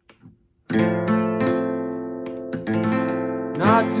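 Acoustic guitar strummed: after a brief silence a full chord comes in suddenly and rings, struck again several times. A man's singing voice comes in near the end.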